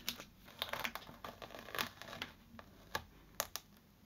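Adhesive frisket film being picked up at its edge with a pin and peeled off an acrylic-painted canvas: faint scattered crinkles and small ticks.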